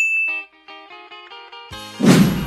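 A single sharp, high ding, ringing for about half a second, followed by soft background music with a stepping melody.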